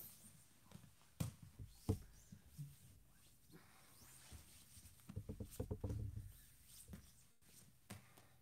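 Two grapplers moving on foam mats, with no gi. There are two thuds of bodies meeting the mat about one and two seconds in, then a run of quick soft thumps and shuffling around five to six seconds.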